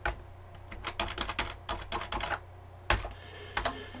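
Computer keyboard keystrokes: one click at the start, a quick run of typing about a second in, then a louder single stroke and a couple of lighter ones near the end.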